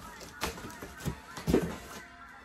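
Large cardboard shipping box being handled and opened with scissors: three or four sharp knocks about half a second apart, the loudest near the end.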